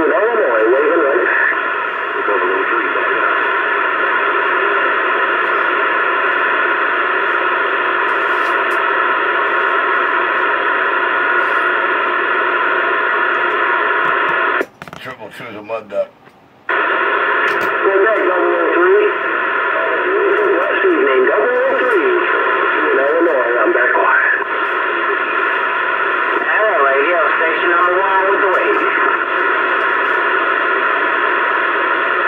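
Uniden CB radio's speaker playing garbled, unintelligible voices from other stations, with several steady whistling tones and static over them, as heard from long-distance stations on the CB band. The signal cuts out for about two seconds around the middle, then the voices and tones return.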